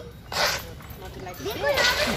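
A dog giving short barks, with a child's voice mixed in.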